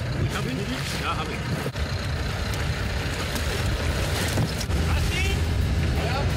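Engine of a rigid-hull inflatable boat running steadily at low revs while the boat lies stopped in open sea, with wind and water noise over it.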